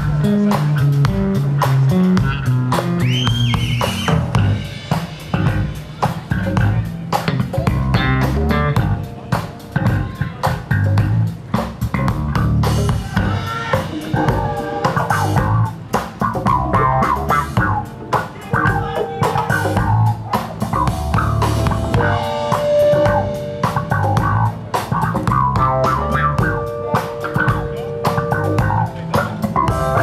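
A live band playing the instrumental opening of a song, with bass guitar, electric guitar and drum kit keeping a steady beat.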